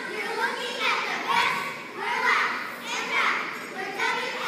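A squad of young cheerleaders shouting a cheer together in unison, high children's voices in phrases about a second apart, echoing in a large gym.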